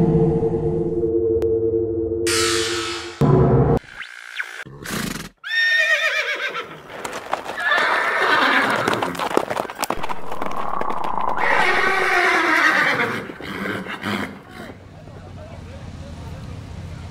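Edited intro sound: a sustained droning chord for the first few seconds, a couple of whooshes around four to five seconds in, then repeated horse whinnies from about six seconds until near the end.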